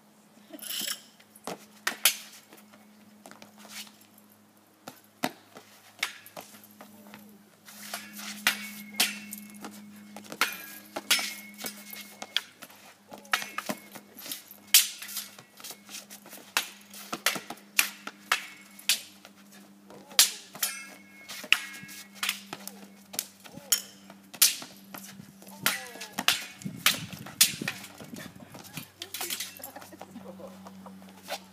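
Spear and saber striking each other in a paired fighting routine: sharp clacks and clinks, some with a brief metallic ring from the saber blade. The strikes are sparse at first, then come thick and fast from about eight seconds in, often two or three a second.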